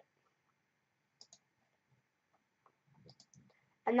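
Computer mouse clicking: a quick pair of clicks a little over a second in, then a few fainter clicks about three seconds in.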